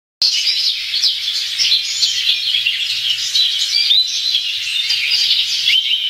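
A dense chorus of small birds chirping and twittering, many short high chirps and trills overlapping without a break.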